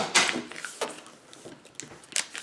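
Sheet of origami paper being folded and creased by hand: a few short, crisp crackles and rustles, the loudest right at the start.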